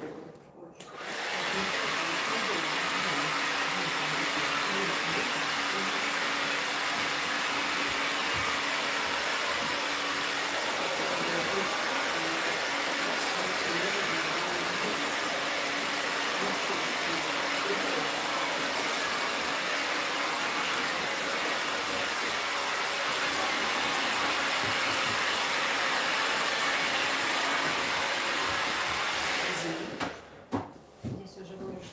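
Handheld hair dryer blowing air steadily over a client's hair, switched on about a second in and cut off just before the end, with a faint steady hum under the rush of air.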